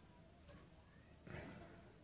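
Near silence with faint handling noise from small wire terminals and a metal test-light clip, and a soft rustle about one and a half seconds in.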